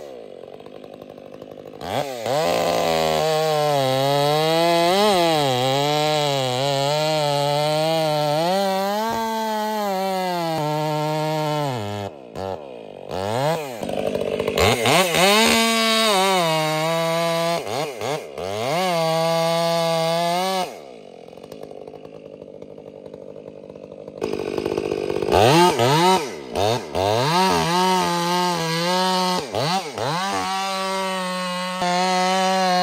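Large chainsaw cutting into a redwood trunk, its engine pitch wavering up and down as the bar bogs and frees in the wood. It drops to idle twice, at the start and about two-thirds of the way through, and comes back up with revs.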